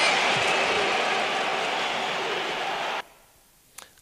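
A dense, even crackle of noise like a crowd clapping, fading slightly, that cuts off suddenly about three seconds in, followed by a brief hush with one faint tick.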